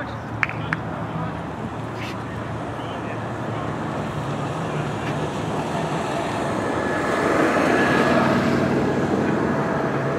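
Open-air sports-ground ambience: a steady wash of background noise with distant voices, swelling louder about seven seconds in. Two sharp clicks sound about half a second in.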